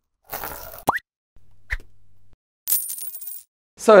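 A string of short animation sound effects: a noisy whoosh, a quick upward-sliding pop about a second in, a low hum with a small blip in the middle, and a bright high shimmer near the end.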